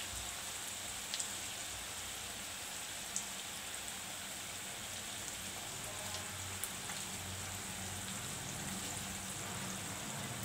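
Karanji deep-frying in hot oil in a steel pan over a low flame: a steady, even sizzle broken by a few sharp pops of spitting oil. A low hum comes up about halfway through.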